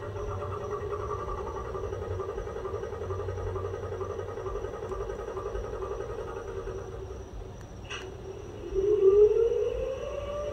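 Model electric locomotive's sound decoder, class 194: a steady hum with a slight pulsing, a short click about eight seconds in, then a louder rising whine as the traction sound winds up.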